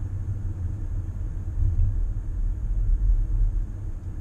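Low, steady rumble inside the cabin of a 2017 Bentley Bentayga driving at speed: its twin-turbocharged 6.0-litre W12 engine and road noise.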